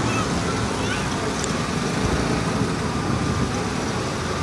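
Steady outdoor street background noise: a continuous even hiss and rumble with no distinct events.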